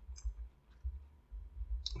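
A person chewing a mouthful of fried chicken sandwich, with a few faint wet mouth clicks and dull low thumps.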